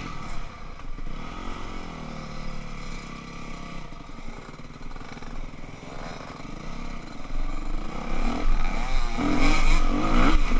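Yamaha YZ250F four-stroke single-cylinder dirt bike engine running at low revs while the bike rolls along the trail, then revving up and accelerating over the last couple of seconds.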